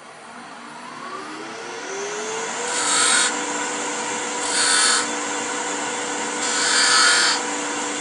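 Wood lathe motor spinning up with a rising whine, then running steadily while a skew chisel makes three short hissing cuts into the spinning blank, cutting small grooves for a burn wire.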